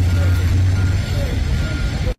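Steady low engine rumble of an idling truck, with faint voices in the background.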